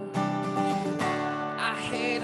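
Acoustic guitar strummed, with a new chord about a second in, and a man's voice singing along near the end, heard over a video call.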